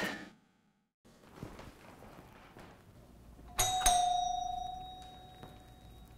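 Apartment doorbell chime: two quick strikes about three and a half seconds in, ringing out and fading over the next two seconds.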